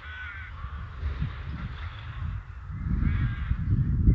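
Bird calls: a short harsh call right at the start and another around three seconds in, over a low, uneven rumble.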